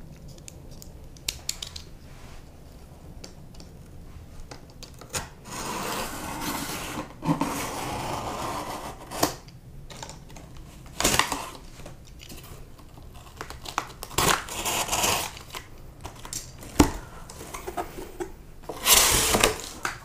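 Packing tape on a cardboard shipping box being slit and torn open by hand, then the cardboard flaps pulled back: several scratchy tearing and rubbing bursts of a second or two each, with a few sharp clicks in between.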